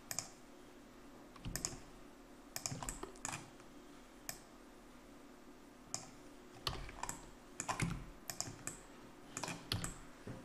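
Computer keyboard keys and mouse buttons clicking in small irregular groups of taps, spread unevenly through the stretch. These are the keystrokes and clicks of someone working 3D modelling software.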